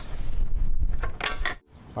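Knocks and metallic clinks from an aftermarket spare tire carrier being handled and seated against the steel tailgate support bracket, with a heavy low rumble of handling noise. The sounds stop about one and a half seconds in.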